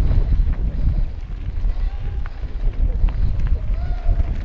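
Wind buffeting a helmet- or bike-mounted action camera while a mountain bike runs fast down a rocky dirt singletrack: a steady low rumble of tyres and rattling bike, with a few sharp clicks and knocks from rocks and the chain. Faint short pitched calls come up about halfway through and again near the end.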